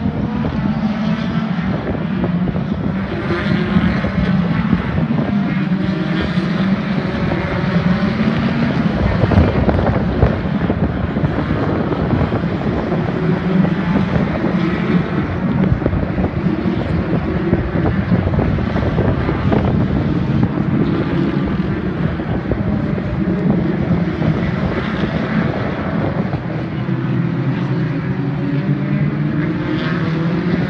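A pack of British Touring Car Championship racing cars running hard past the trackside, their turbocharged two-litre four-cylinder engines blending into one continuous engine noise whose pitches rise and fall as cars pass and change gear. A little wind on the microphone.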